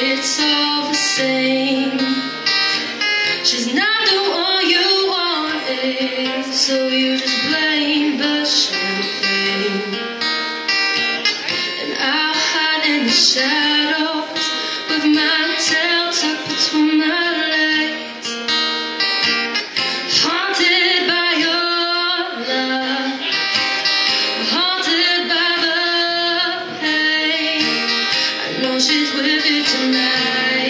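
A woman singing live over her own acoustic guitar accompaniment, her voice sliding through long held notes above the strummed chords.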